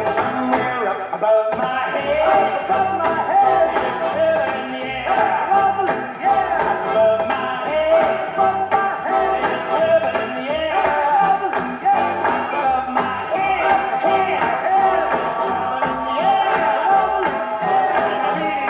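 Music from a 1957 78 rpm shellac record playing on a turntable through hi-fi speakers: a 1950s pop song with a steady beat.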